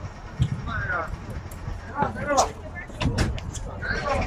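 Background voices of people talking, in short snatches about a second in and again a little past two seconds, over a steady low outdoor background, with a few light clicks.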